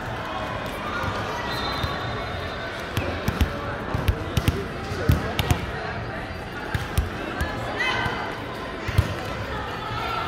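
A volleyball being struck and bouncing: a run of sharp slaps about half a second apart starting about three seconds in, then a couple of single hits later on, over players' voices.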